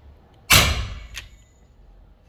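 FX Impact M3 PCP air rifle firing a single shot about half a second in: a sharp report that fades quickly, followed by a short click.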